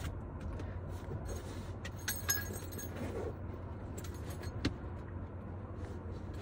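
Rummaging through a small bag: light rustling and a few small metallic clinks, with a brief cluster of clinks about two seconds in, over a steady low hum.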